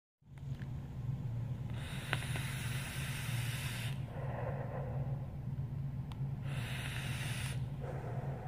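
A vape hit drawn through a rebuildable dripping atomizer on a box mod. A hissing pull of air lasts about two seconds, with a light click in it, and is followed by breathy exhaling of the vapor and a second, shorter hiss near the end. A low steady hum runs underneath.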